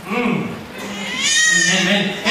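A man's voice through a microphone and PA making drawn-out, wordless vocal sounds, with held tones that rise in pitch and grow louder about halfway through.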